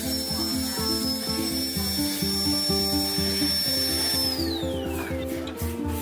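Background music, with a dental drill's high, steady whine over it that glides down in pitch as the drill winds down, a little after four seconds in.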